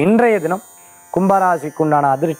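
A man speaking Tamil, with a short pause about half a second in.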